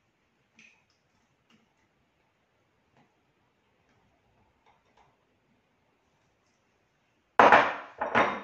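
A few faint scrapes and taps of a spatula pushing tomato out of a small cup into a food processor bowl, then a loud clatter near the end as kitchenware is handled.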